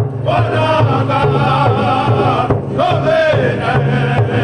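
A group of men singing a powwow song in unison in high, strained voices, beating a single large powwow drum together with padded drumsticks in a steady beat.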